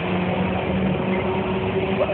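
Car engine running steadily at an even pitch, a constant low hum over the general din of a drag strip.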